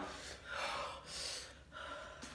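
A person breathing hard through the mouth in a few sharp, airy gasps, panting against the burn of extremely spicy noodles.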